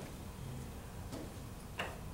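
Quiet room tone in a hall, with one short click near the end.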